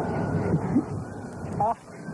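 Indistinct talk from people close by mixed with wind noise on a camcorder microphone, with a faint steady high whine underneath; near the end a man says a short 'ah'.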